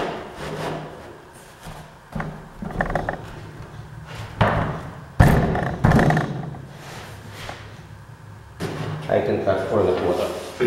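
Laminate floor planks being handled on a wooden workbench as their click-lock edges are pressed together: rubbing and sliding, with a few sudden knocks, the loudest about five seconds in.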